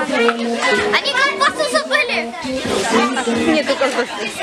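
Many children's voices talking and calling out over one another, too mixed to make out words, over a quieter melody of held, stepping notes.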